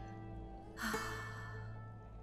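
Soft background music with held notes, and a single breathy sigh a little under a second in, from a woman reacting in distress.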